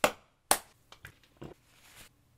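A few sharp clicks or taps. Two louder ones come about half a second apart, followed by three or four fainter ones.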